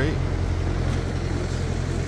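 City street traffic: a steady low engine rumble from road vehicles.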